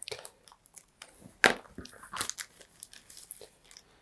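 A clear plastic parts bag crinkling and crackling as it is pulled open by hand, in scattered small crackles, the loudest about a second and a half in.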